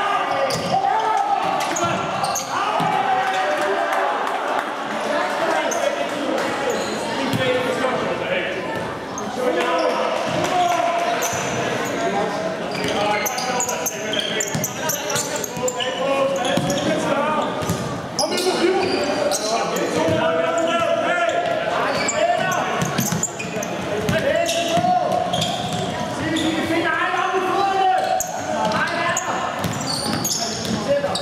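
Live futsal game sound in a large, echoing sports hall: the ball kicked and bouncing on the wooden court, with players' shouted calls throughout.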